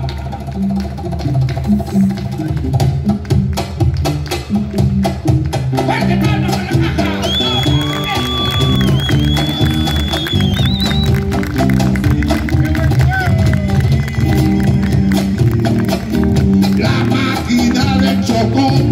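Live Afro-Peruvian tondero played by a band: guitars over a driving cajón rhythm, with bass notes stepping along beneath. A high note is held for a few seconds in the middle.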